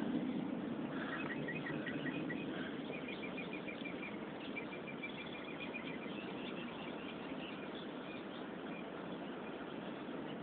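A bird chirping in quick runs of short high notes, about three runs between one and seven seconds in, over a steady outdoor background hiss.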